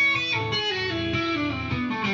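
Electric guitar played legato with the fretting hand: a quick run of single notes hammered on and pulled off, a whole tone apart at frets five, seven and nine, as a finger-strength exercise. The notes step downward through most of it.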